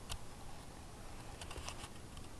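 A few faint, light clicks and taps: one just after the start, then a quick cluster of several in the second half.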